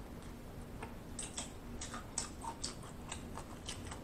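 Fried chicken wing being bitten and chewed close to the microphone: a string of short crisp crackles and clicks, a few each second.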